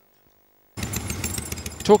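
Silence, then about three-quarters of a second in a motorcycle engine is suddenly heard running, a rapid train of exhaust pulses.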